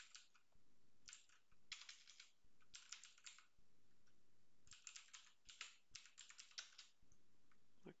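Faint computer keyboard typing: several short flurries of keystrokes with pauses between.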